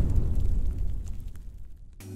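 Sound effect of a fiery boom for a logo reveal: a low rumble with scattered crackles, fading away over the two seconds.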